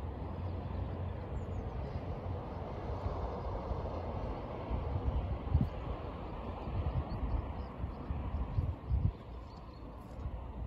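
Steady outdoor rumble and hiss, like distant traffic, with irregular gusts of wind buffeting the microphone in the second half.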